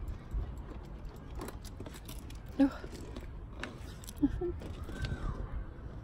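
A few short vocal sounds and faint clicks over a low steady rumble, with a brief arching tone about five seconds in.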